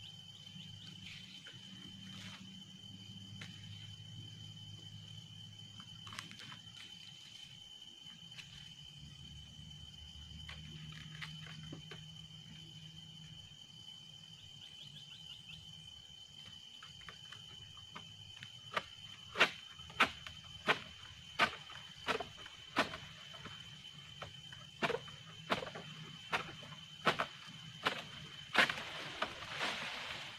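A steady high insect drone, and from about two-thirds in a run of sharp strokes, roughly three every two seconds with a short break midway, as an egrek's sickle blade on a long wooden pole is pulled against an oil palm frond stalk to cut it.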